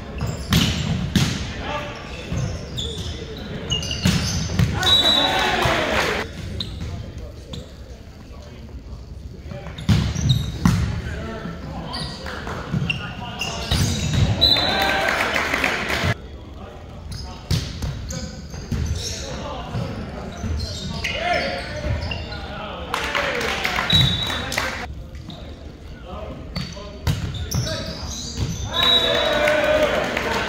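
Indoor volleyball play in a large gym: the ball struck with sharp slaps, players calling out and spectators cheering in loud bursts several times, and short high sneaker squeaks on the hardwood floor.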